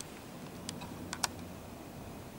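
Four light, sharp clicks, two of them close together about a second in, over faint room tone.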